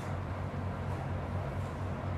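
Steady low hum and rush of air from a laminar airflow hood's blower running.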